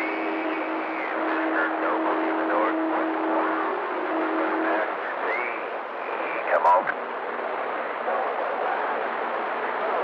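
A shortwave radio receiver plays band noise with faint, unintelligible voices and whistling tones drifting in and out. A steady tone stops about halfway through, and a brief loud crackle with a falling sweep comes a little later.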